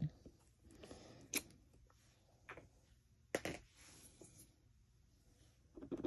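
Faint handling sounds of a clear acrylic stamp block on a craft desk: a few light taps and clicks, the clearest about a second and a half in and again at about three and a half seconds.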